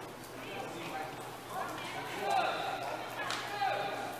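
Several raised voices calling and shouting at a distance across an open football pitch, growing louder from about halfway through.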